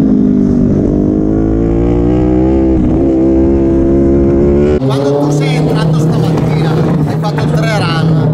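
Ducati Panigale V4's V4 engine running hard on track, its pitch rising with two brief dips. About five seconds in it cuts off abruptly, replaced by voices over a steady low hum.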